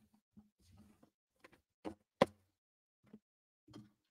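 About seven soft knocks and clicks of small objects being handled on a desk, the sharpest a little past two seconds in.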